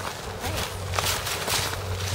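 Footsteps of a person walking through dry woodland undergrowth, about two steps a second, with a low rumble of wind on the microphone.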